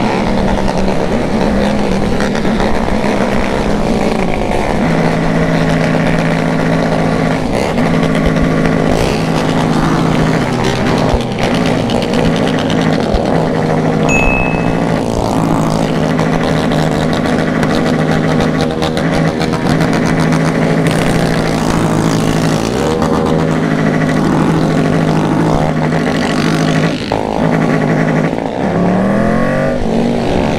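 Triumph Tiger motorcycle's three-cylinder engine running while riding in traffic, with wind rush. The engine pitch holds steady for long stretches, then rises and falls near the end as the rider changes speed.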